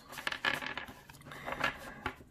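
A 78-card tarot deck handled and squared up in the hands, the card edges giving a string of irregular light clicks and rustles.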